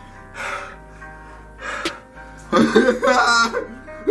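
Background music with steady held tones under a man's breathy gasps from a mouth burning after the hot chip, then a loud, wavering wordless vocal outburst about two and a half seconds in.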